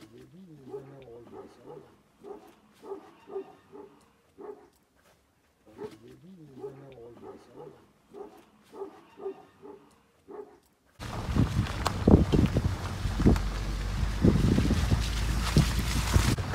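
Short, pitched, voice-like calls in quick pulses, with the same stretch heard twice. Then, about eleven seconds in, a loud, steady rush of wind buffeting the microphone takes over.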